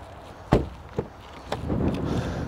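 A car door shuts with a single sharp thump about half a second in, followed by two lighter latch clicks as a rear door of a 2017 Jeep Cherokee is opened, then soft rustling.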